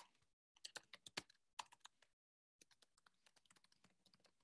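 Faint typing on a computer keyboard: quick runs of key clicks in short bursts, broken by moments of dead silence.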